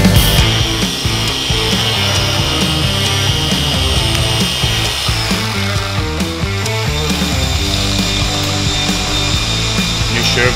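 Background music over the steady high whine of a dual-action polisher buffing car paint; the whine is strongest in the first half and fainter after about five seconds.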